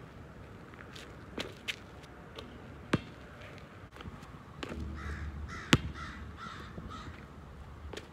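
A basketball bouncing a few times on an outdoor hard court, with sharp single bounces, the loudest about six seconds in. In the second half a bird gives a quick run of short, harsh calls.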